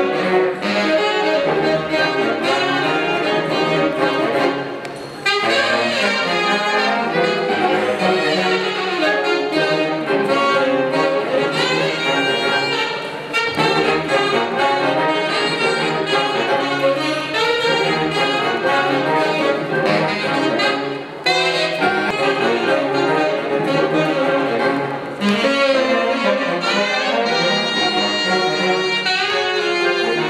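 A small ensemble of saxophones, trumpets and trombone playing live, with a few brief breaks between phrases.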